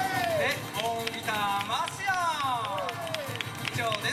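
A man's voice over the stage PA, with the acoustic band's music faint behind it.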